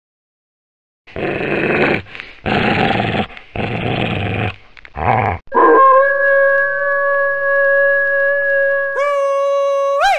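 Wolf sound effect: starting about a second in, four short rough growls, then one long steady howl that lifts in pitch again about a second before the end.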